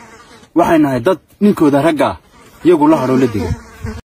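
A man speaking to the camera in three short phrases separated by brief pauses.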